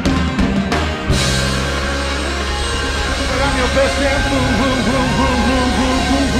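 Live band with a horn section (trumpet and saxophones) playing: sharp accented hits in the first second, then a held full chord over steady bass and drums, with a voice singing over it from about halfway through.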